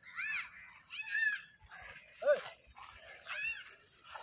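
Four short, high-pitched animal calls, each rising and then falling in pitch; the third is lower and the loudest.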